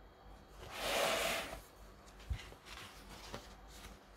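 A paper page of a large book turned by hand: a rustling swish of paper about a second in, then a short soft thump and a few faint paper-handling clicks.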